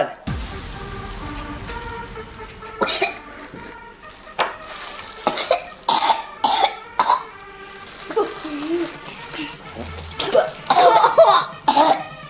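Kids coughing, gagging and retching after swallowing a shot of a disgusting blended drink, one of them throwing up into a plastic bag. The coughs and heaves come in repeated sudden bursts from about three seconds in, heaviest near the end, over background music.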